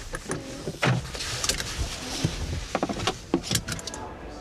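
Irregular clicks and knocks with some rustling from a person moving about inside a parked car. The sharpest clicks come in a cluster in the second half.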